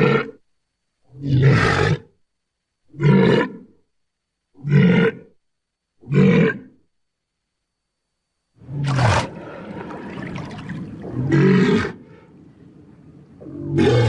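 Custom-made Tyrannosaurus rex roar sound effects: five short calls about a second and a half apart, then a pause, then three longer roars over a steady background noise, the last one near the end.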